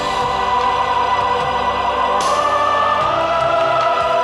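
Opening theme song of a television drama: sung melody over orchestral backing, with a long held vocal note that rises slightly in pitch about halfway through.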